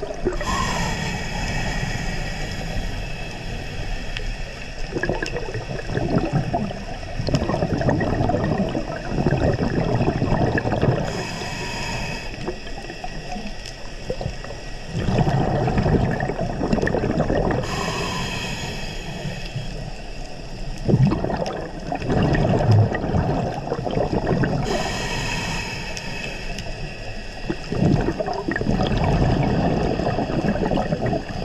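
Scuba diver breathing through a regulator underwater: four hissing inhales, each followed by several seconds of bubbling as the exhaled air leaves the regulator.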